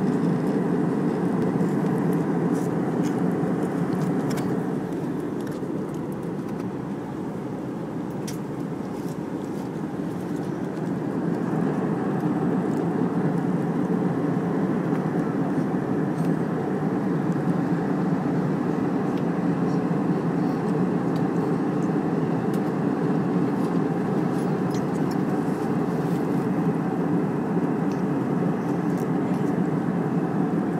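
Steady cabin noise of a jet airliner in cruise flight, the engines and the air rushing past the fuselage, easing off slightly for a few seconds and then building back.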